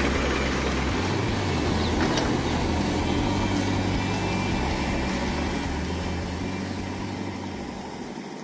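Diesel engine of a JCB backhoe loader running steadily while it works a garbage heap, a low drone that slowly fades toward the end.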